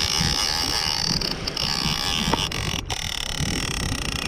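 Big-game lever-drag reel being cranked to winch in a hooked shark, its gears whirring steadily and stopping near the end, over wind buffeting the microphone.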